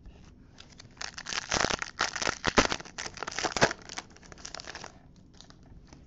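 Foil wrapper of a hockey card pack crinkling and tearing as it is opened by hand: a dense run of crackling from about a second in to near the end, with the sharpest snaps in the middle.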